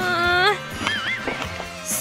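Background music, with a short wavering voice-like sound near the start and a warbling high-pitched tone about a second in.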